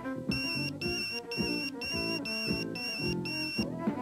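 A pager's electronic alert beeping seven times in a row, about two beeps a second, each a high steady tone, over background music.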